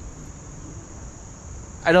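A steady, high-pitched chorus of insects in summer woodland, with no rise or fall.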